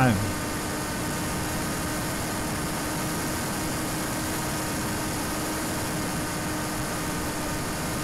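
Tek-Sumo flying wing's electric motor and propeller heard from its onboard camera, running steadily with a constant whine over rushing air, at the 50% throttle its failsafe sets after the radio link is lost.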